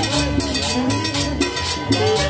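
Live Latin dance music from a street band: a steady cowbell beat with timbales over a bass line and a melody.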